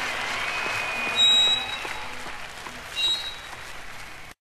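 Live concert audience applauding and cheering, with two loud, shrill whistles, about a second in and again near three seconds. The applause fades away steadily.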